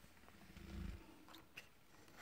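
Near silence with faint handling noise: a brief low rumble about half a second in, then a couple of light clicks.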